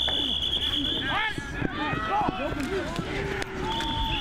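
A sports whistle blows one long steady blast, then sounds again near the end, over players and coaches shouting on a football practice field. Some thuds from contact drills come through.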